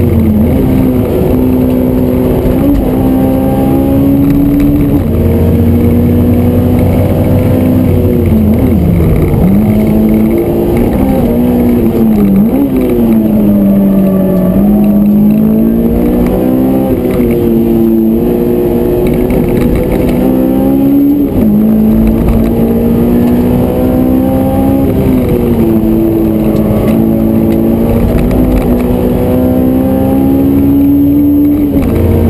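Honda S2000's four-cylinder engine heard from inside the cabin under hard track driving, its pitch climbing steadily and then dropping sharply several times, about 9, 12 and 21 seconds in, before climbing again.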